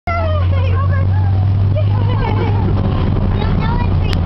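Indistinct, excited, high-pitched voices over a steady low rumble of street traffic.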